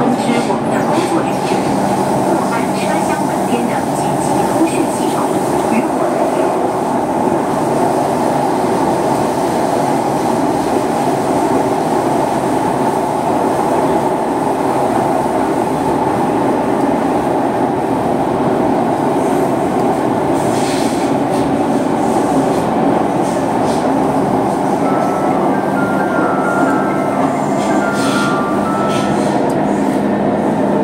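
C151 metro train with Mitsubishi GTO-chopper traction running through a tunnel, heard from inside the car: a steady, loud rumble of wheels and running gear with a constant low hum. Faint high tones come in near the end.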